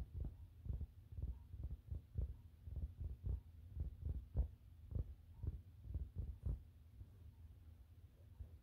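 Fingertips tapping on a rug close to the microphone: soft, low, even taps about two a second that stop about six and a half seconds in.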